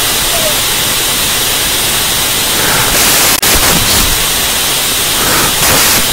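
Loud, steady electronic static hiss filling the audio feed, with a single sharp click about three and a half seconds in.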